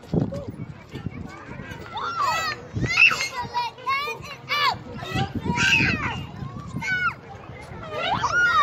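Young children's voices: a run of short, high-pitched calls that rise and fall in pitch, the loudest about three seconds in.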